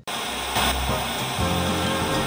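Steady hiss of television static used as a sound effect, cutting in suddenly, with low steady tones of music beneath.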